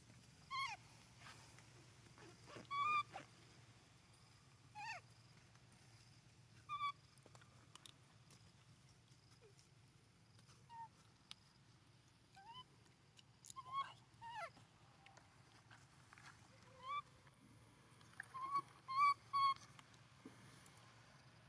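Baby pig-tailed macaque giving short, high-pitched squeaking calls, each dropping in pitch, every second or two, with a quick run of several near the end.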